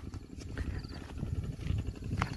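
Footsteps of someone walking along a dirt path: a steady run of dull, low thuds, several a second.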